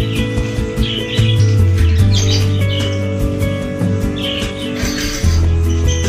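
Background music with steady sustained low tones, over which small caged birds chirp in short, irregular calls every half second to a second.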